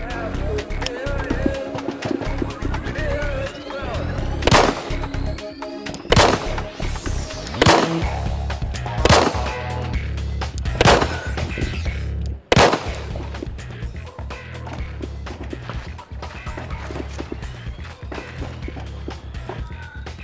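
Background music with a heavy beat, cut through by six handgun shots, roughly one every second and a half, which are the loudest sounds.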